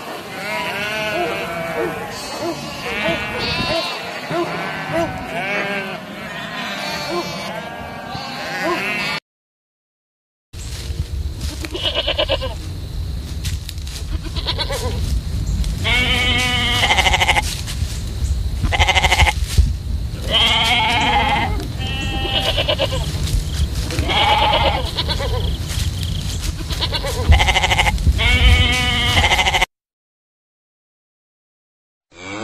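A flock of sheep bleating, many calls overlapping at once. After a brief break about nine seconds in, separate bleats come every second or two over a steady low rumble.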